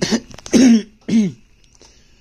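A man coughing and clearing his throat: three short bursts about half a second apart, the middle one the loudest.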